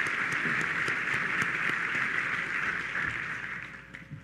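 Audience applauding: many hands clapping in a steady patter that fades away near the end.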